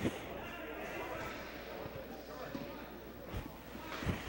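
Ice rink ambience during a stoppage in play: faint distant voices and chatter echoing in a large arena over a steady low hum.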